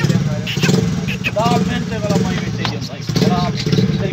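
An engine idling steadily with an even low pulse, under a few short bursts of voices.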